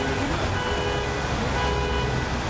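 Road traffic rumbling steadily, with a few held steady tones over it.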